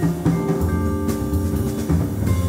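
Jazz trio playing live: vibraphone notes ring and hold over double bass and a drum kit, with cymbal and drum strokes.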